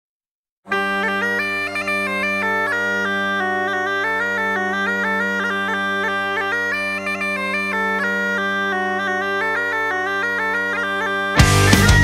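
Bagpipe melody over steady drones, starting just under a second in. Near the end the full heavy-metal band of drums and distorted guitars comes in.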